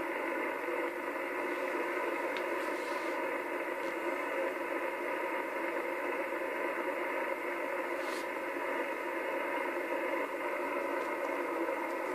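Steady static hiss from a Kenwood TS-850S HF transceiver's loudspeaker, tuned to 27.585 MHz upper sideband with no station talking. The hiss sounds thin and narrow, cut off above and below by the receiver's voice filter.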